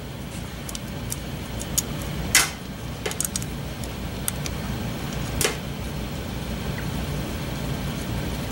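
Light, scattered metallic clicks and taps as a shift cam stopper arm and its bolt are fitted and wiggled by hand against the transmission's shift drum. The loudest click comes about two and a half seconds in and another about five and a half seconds in. A steady low hum runs underneath.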